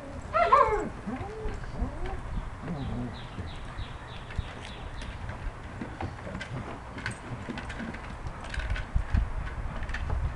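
German shepherd dogs playing on bare dirt: a short whining call about half a second in, then low grumbling vocal sounds, with scattered knocks and scuffles as they chase hard plastic treat balls. A run of faint high chirps sounds in the middle.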